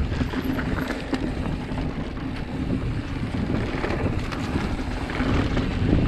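Wind buffeting the microphone of a handlebar-view camera on a Giant Reign mountain bike riding down dirt singletrack, over the rolling noise of the tyres on the dirt and scattered short clicks and rattles from the bike.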